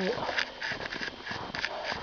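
Several short crunches of footsteps in snow, a few per second, with faint rustling.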